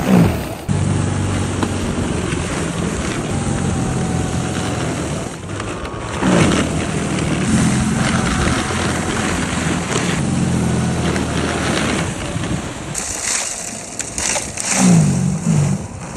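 DeWalt cordless single-stage snow blower running, its electric motor humming steadily while the auger churns and throws snow. The motor's pitch briefly sags and recovers a few times.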